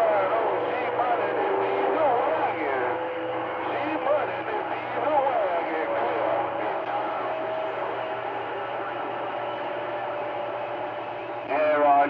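CB radio receiver on channel 28 (27.285 MHz) picking up weak, garbled voices from distant stations through static hiss, with steady heterodyne whistles from overlapping carriers. A stronger, clearer voice comes in near the end.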